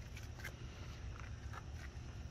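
Quiet open-air background: a steady low rumble with a few faint ticks, no clear event.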